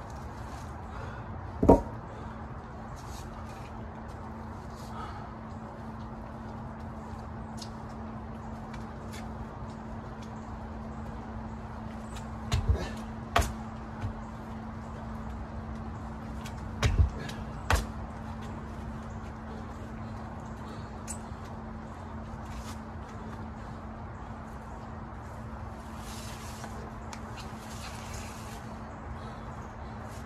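Workout thuds: heavy knocks from dumbbells and a plyo box, one about two seconds in, a few in quick succession near the middle, then a close pair. A steady low hum runs underneath.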